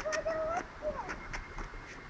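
A faint voice calls out briefly near the start, followed by a few softer short vocal sounds.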